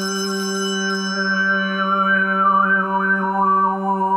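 Overtone singing: a steady low drone with one whistling overtone above it, gliding up and down in a slow melody. A small brass handbell's ringing fades out about a second in.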